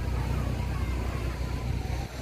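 Wind buffeting the phone's microphone in a steady low rumble, with faint chatter of a crowd behind it.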